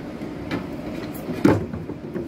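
Door of a front-load washing machine being swung on its hinge and handled: a few light knocks and clicks, with a louder thump about one and a half seconds in.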